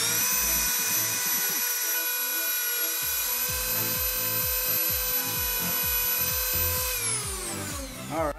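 Dremel rotary tool with a cut-off wheel running at full speed as it cuts through the end of a plastic toilet-paper roller, a steady high whine. The whine drops in pitch and dies away as the motor winds down about seven seconds in.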